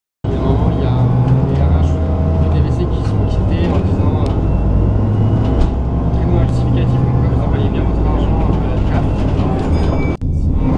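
Cabin noise of a moving city bus: a steady low engine drone with road noise and light rattles.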